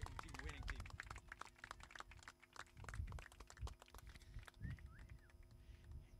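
Faint, scattered clapping from a small crowd, with a few faint voices in the background.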